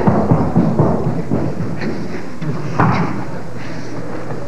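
Theatre audience laughing, with a single thump about three seconds in.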